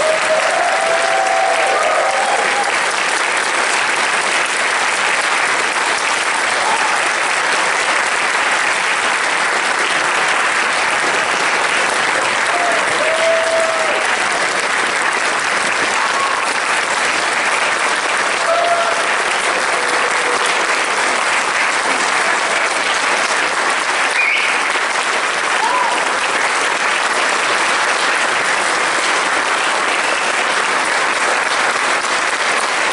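Audience applauding steadily, with a few short cheers heard over the clapping.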